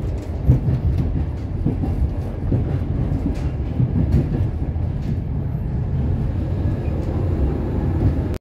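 Running noise of a passenger train heard from inside the coach: a steady low rumble of wheels on the track, with scattered short knocks and rattles.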